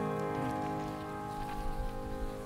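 The final chord of a hymn accompaniment, held and slowly fading away, with faint scattered rustles and clicks.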